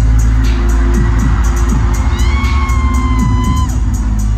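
Loud live music through an arena PA, heavy in the sub-bass, with bass notes that slide downward, over a cheering crowd. A held high tone comes in about two seconds in and stops near the end.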